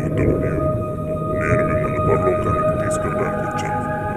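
Animated film soundtrack: dramatic music with long held tones over a low rumbling noise.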